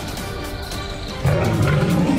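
Background music, and a little over a second in a big cat's loud roar cuts in over it.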